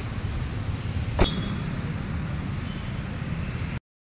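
Wind buffeting the microphone outdoors, heard as a steady low rumble, with one sharp click about a second in. The sound drops out at a cut just before the end.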